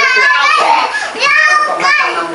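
High-pitched children's voices talking, in three short stretches with brief gaps between.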